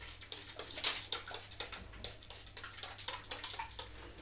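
Light, irregular clicks and crackles of handling noise, several in quick succession through the whole stretch with no steady rhythm.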